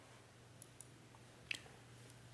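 Near silence with a faint steady hum, broken by two tiny ticks and then one sharper click about one and a half seconds in. The click is a computer mouse click advancing the lecture slide.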